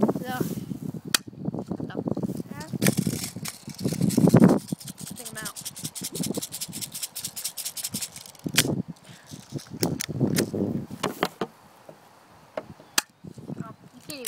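A pump-action spring airsoft pistol, a Stinger P9T, cocked and fired several times at a metal post. Each shot is a sharp snap, with rubbing and handling noise between the shots.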